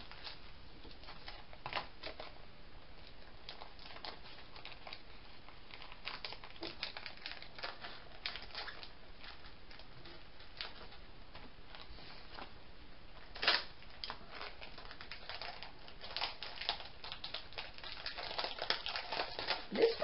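Faint crinkling of clear plastic packaging being handled, with scattered small clicks, one sharper click about thirteen and a half seconds in, and more rustling toward the end.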